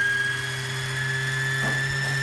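Juki SPUR 98 semi-industrial sewing machine running at a steady speed to wind a bobbin: a steady high whine over a low hum.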